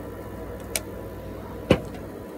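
Two short knocks about a second apart, the second louder, from aluminium drink cans being handled and swapped, over a low steady background rumble.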